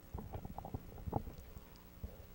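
Handling noise on a handheld microphone: soft, irregular low knocks and rubs.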